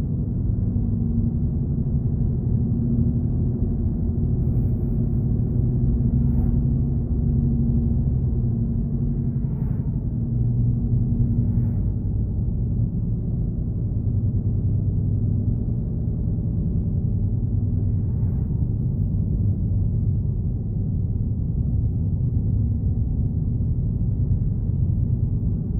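Steady low rumble of a car's engine and tyres heard from inside the cabin while driving at road speed, with a faint steady hum.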